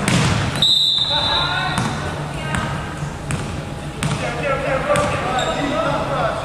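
Basketball bouncing on a hardwood gym floor, a sharp thud about once a second, with a short high referee's whistle about half a second in. Voices from the players and crowd carry through the hall.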